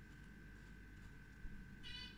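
Near-silent room with a faint steady high whine, a small knock, and then a short high-pitched squeak near the end.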